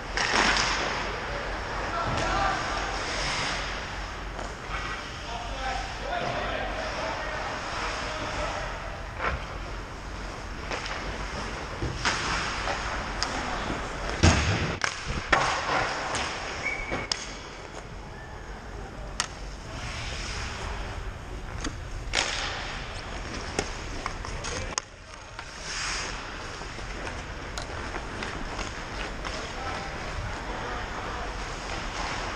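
Ice hockey play in an indoor rink: skates scraping the ice with a steady hiss, sticks and puck clacking, and sharp knocks against the boards now and then, the loudest about halfway through. Indistinct player shouts come and go.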